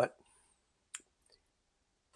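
A single short, sharp click about a second in, with near silence around it.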